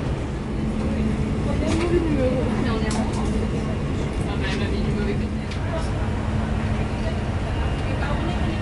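Steady low rumble of an Airbus A330-300 airliner cabin's ambience, with faint background voices and a few light clicks.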